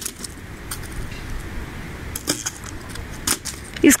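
An axe chopping wooden planks: a few sharp, separate knocks as the blade bites into the wood, spaced about a second apart.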